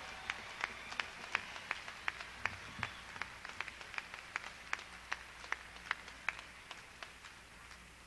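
Concert audience applauding. Separate claps stand out about three times a second over a thin haze, and they fade toward the end.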